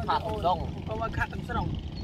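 People talking over a low, steady engine hum.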